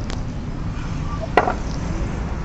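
A single sharp knock about a second and a half in, with a smaller click at the start, over a steady low rumble.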